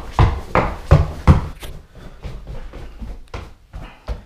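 Hurried footsteps thudding up carpeted stairs, about three heavy steps a second for the first two seconds, then lighter footfalls and a few knocks.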